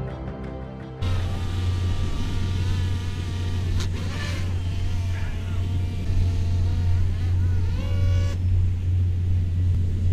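A small quadcopter drone's propellers whining as it hovers close and is caught by hand, the pitch wavering up and down, then rising sharply before the motors cut out near the end. A steady low wind rumble on the microphone runs underneath, after a second of background music at the start.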